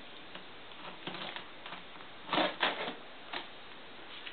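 A few short scratchy clicks of a Gerber knife cutting the packing tape on a cardboard box, the loudest two coming close together about two and a half seconds in.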